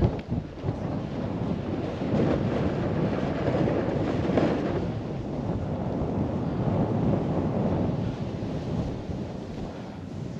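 Wind rushing over a helmet-mounted camera's microphone while snowboarding downhill, a steady rush of noise that eases slightly near the end.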